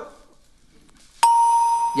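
Game-show answer-board reveal chime: after a brief hush, a single bright electronic ding sounds a little over a second in and rings on steadily, signalling that a survey answer has been uncovered on the board.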